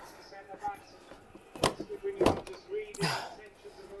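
Two sharp knocks, about half a second apart, with some rattling, as a BMW M3's plastic front bumper is tugged at while it is still fastened to the car.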